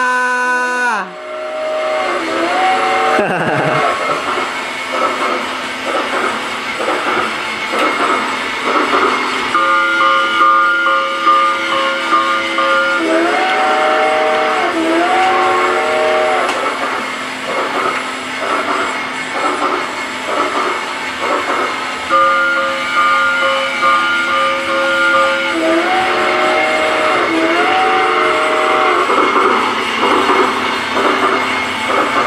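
Battery-operated toy steam train running on plastic track: a steady clicking chug, with a recorded electronic whistle sound that repeats about every twelve seconds, a held chord followed by two pitch-bending swoops.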